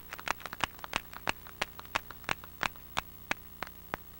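Scattered hand clapping from a small audience, a few sharp claps a second, thinning out and stopping near the end.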